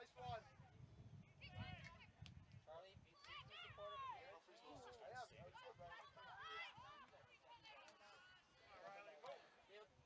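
Faint, distant voices calling and shouting across a soccer field, with a low outdoor rumble underneath in the first few seconds.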